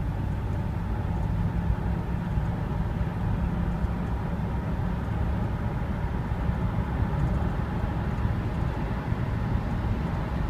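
Steady cabin drone of a 2003 Chevrolet Suburban cruising, with low engine and road rumble heard from inside the cab. It holds an even pitch and level throughout, with no rev flare.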